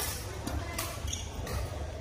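Badminton rackets striking shuttlecocks: several sharp cracks spread irregularly through the two seconds, echoing in a large sports hall, with voices in the background.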